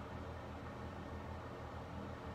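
Steady low room hum with a faint even hiss, with no distinct event.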